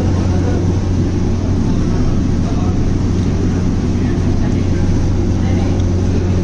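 A steady low hum over a constant rushing noise, unchanging throughout, with faint voices in the background.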